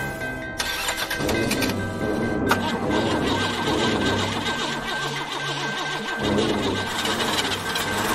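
Radio-drama sound effect of a car engine being cranked over and not catching, the sign of a stalled engine, under tense dramatic music.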